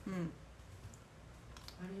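A brief murmured 'un' at the start, then a few faint, short clicks about one and a half seconds in, just before more speech.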